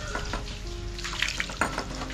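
Water poured from a plastic jug splashing over raw meat on a wire grill rack, rinsing it.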